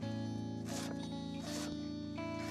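Kitchen knife slicing through a head of cabbage onto a wooden cutting board, two cuts less than a second apart, over steady background guitar music.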